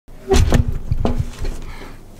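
Handling noise from a camera being fumbled and repositioned close to its microphone: a run of low rumbling thumps and rubbing, loudest in the first second, then tapering off.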